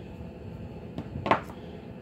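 A roll of magnetic tape being put down on a cutting mat, giving one short clatter about a second and a half in, with a faint click just before it, over quiet room tone.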